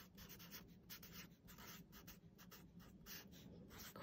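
Faint strokes of a Sharpie permanent marker's felt tip on a folded paper card, writing a word in a string of short, irregular scratches.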